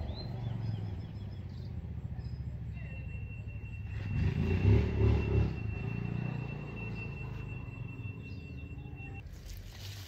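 Low engine rumble of a passing motor vehicle, swelling about four to five seconds in and then fading.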